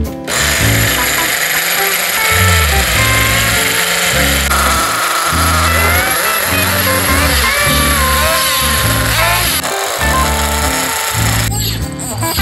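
A radio-controlled car's small nitro glow engine running and revving, its pitch rising and falling. It is mixed over background guitar music with a steady bass line.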